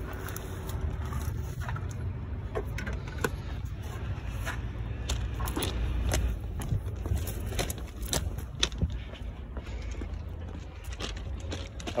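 Ford XB Falcon ute's engine idling, a steady low rumble, with scattered light clicks and ticks over it.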